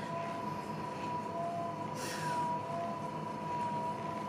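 Steady high-pitched whine with fainter lower tones from an elliptical stepping machine being worked, with a brief soft rustle about halfway through.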